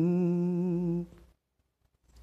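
A singer holds one long sung note that fades out about a second in, leaving silence.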